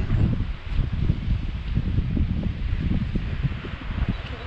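Wind buffeting the microphone: a loud, irregular, gusting rumble.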